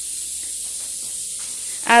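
Steady high-pitched hiss of steam from a pot of cassava cooking on the stove.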